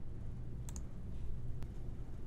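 Computer mouse clicks: a quick pair a little before the middle and a single click later, over a faint low room hum.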